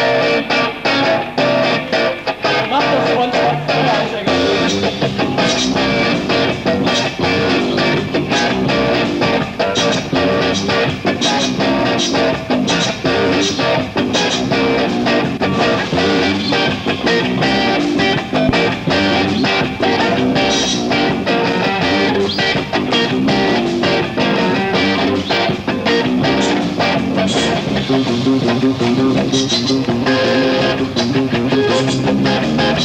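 Punk/new-wave rock band playing live, with electric bass and guitar over a steady driving beat.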